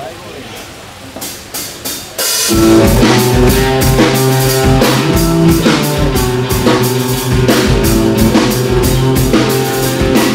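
Live heavy band starting a song: a few sharp drum hits growing louder about a second in, then the full band comes in loud and all at once with distorted electric guitars, bass and drums keeping a steady driving beat.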